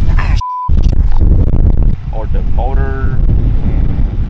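Strong wind buffeting the microphone, with a short single-pitch beep about half a second in, during which the other sound cuts out. A person's voice is heard over the wind in the second half.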